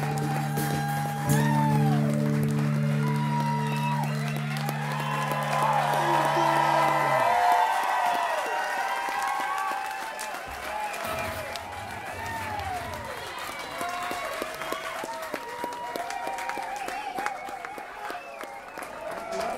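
A live rock band's last chord, a steady low drone, rings on and cuts off about seven and a half seconds in. Throughout, the crowd cheers, whoops and applauds, and carries on after the music stops.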